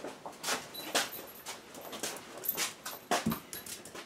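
A pet dog stirring close by, with short scratchy rustles and clicks and a dull thump near the end.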